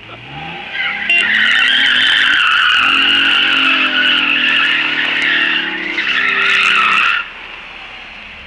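Rear-wheel-drive Opel Omega sedan spinning donuts: the engine revs up, and from about a second in the rear tyres squeal loudly and continuously over the engine. The squeal cuts off suddenly about a second before the end.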